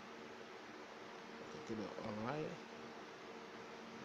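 A steady low hum made of a couple of faint held tones, going on without change. A short spoken word is heard about two seconds in.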